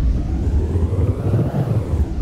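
Steady low tyre-and-road rumble inside a Tesla's cabin on a slushy road, with a rush of noise that swells and fades again over the two seconds.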